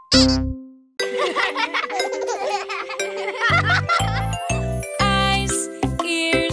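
Children's song music: a jingle's last note dies away into a brief silence, then a tinkly chiming flourish plays, and after about three and a half seconds the song's introduction starts with a steady beat.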